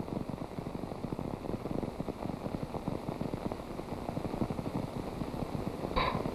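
Steady, dense background noise on a 1948 newsreel soundtrack, mostly low rumble with a fast flicker of crackle and no clear single event.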